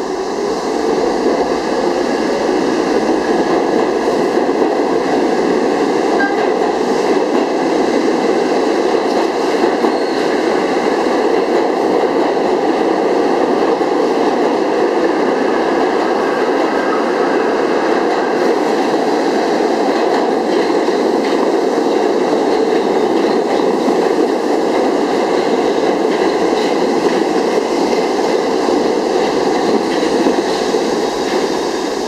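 New York City subway train running past the platform close by, a loud steady rumble of steel wheels on rail that builds up over the first second and then holds.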